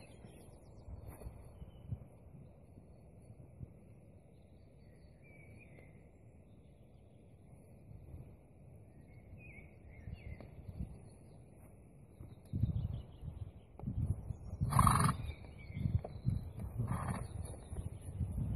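Quiet outdoor background at first, then gusts of wind buffeting the microphone in the last several seconds, with two short snorts from the walking horse near the end.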